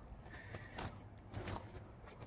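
A few faint footsteps on dirt and wood scraps, about a second in and again half a second later.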